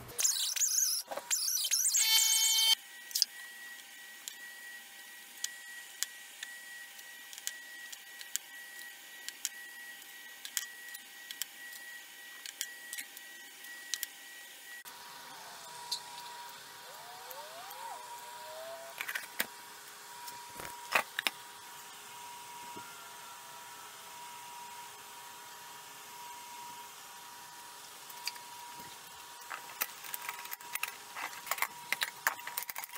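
Workshop handling sounds: a louder clatter and rustle for the first few seconds, then scattered small clicks and taps over a faint steady electrical hum. The hum's pitch changes abruptly about halfway through.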